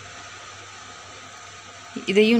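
A steady hiss with a faint low hum underneath, with no stirring or scraping sounds.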